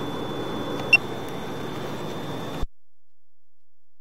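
A sewer inspection camera's recording unit gives one short, high electronic beep about a second in, over a steady hiss and a faint high whine, as the recording is paused. The sound then cuts off suddenly to silence.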